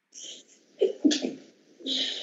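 A man makes three short breathy vocal noises rather than clear words, the loudest about a second in.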